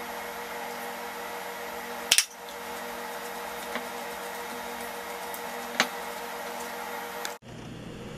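A steady background hum, with a sharp clink about two seconds in and two lighter knocks later. These are a plastic food processor cup and a spoon striking a stainless steel bowl as mashed cassava is scraped in and stirred. The hum cuts off abruptly shortly before the end.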